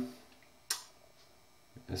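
A pause between words, near silent, broken once about two-thirds of a second in by a single short, sharp click, with speech resuming just before the end.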